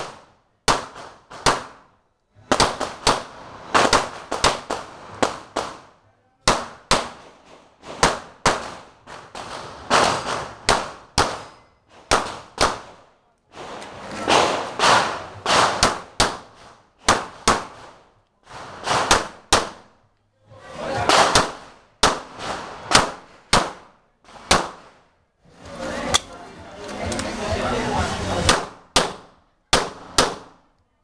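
Glock 17 9mm pistol fired in rapid pairs and short strings, many shots in all, with brief pauses between strings. Each shot rings on with a short echo.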